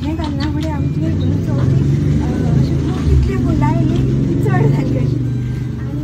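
Low engine rumble of a motor vehicle passing close by, swelling through the middle and easing toward the end, under a woman's continuing speech.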